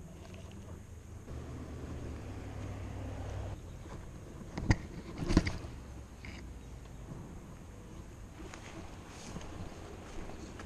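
Low rumble of wind and handling on a body-mounted camera's microphone as a baitcasting rod and reel are handled, with two sharp clicks a little under a second apart about five seconds in.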